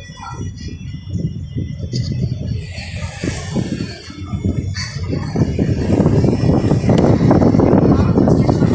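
Rumbling road and wind noise of a moving car, getting louder about five seconds in.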